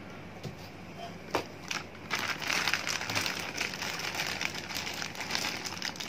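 Clear plastic bag crinkling as it is handled: a few light clicks at first, then from about two seconds in a steady run of rapid crackling.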